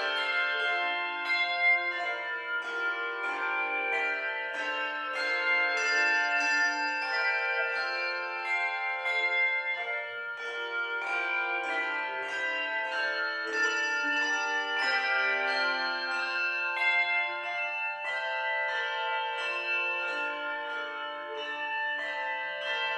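A handbell choir plays a piece. Bells are struck in quick succession, and their tones ring on and overlap in chords and melody.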